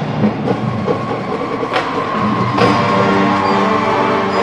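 High school marching band playing, with front-ensemble percussion striking several sharp hits over sustained wind chords. A high note is held from about halfway through.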